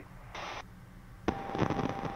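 Noisy aircraft radio frequency crackling with static: a short burst of static about a third of a second in, then from just past halfway a crackly transmission carrying a steady high whine. Underneath runs the low steady drone of the jet cabin.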